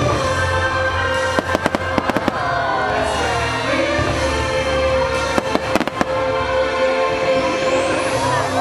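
Fireworks going off over orchestral show music. Clusters of sharp bangs and crackles come about a second and a half in and again about five and a half seconds in.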